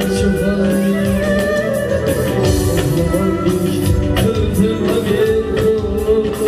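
Live band music through a PA system: a male vocalist singing into a microphone over an electronic keyboard, with hand drums (a doira frame drum and congas) keeping a steady beat.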